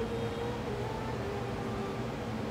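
Steady low background room noise with a faint hum.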